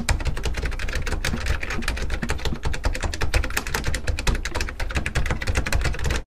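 Keyboard typing sound effect: a dense, continuous run of rapid, irregular clicks with a low rumble beneath.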